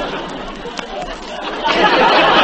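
Studio audience laughing at a joke, the laughter fading and then swelling up again near the end, heard on an old radio broadcast recording.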